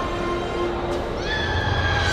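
A long high-pitched shout that sweeps up just over a second in and is held, over the steady din of a busy sports hall.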